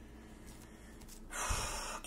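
Faint room tone, then, just past halfway, a woman draws in a quick audible breath through the mouth, lasting a little over half a second.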